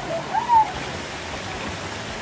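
Steady rushing water of a waterfall and its plunge pool, with a brief voice call about half a second in.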